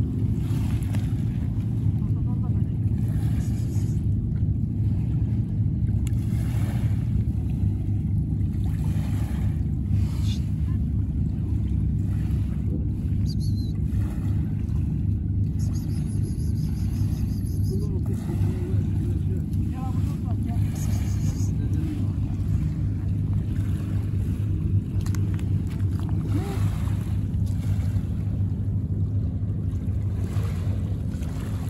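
A boat engine drones steadily and low with a constant hum, over small waves washing on a pebble shore.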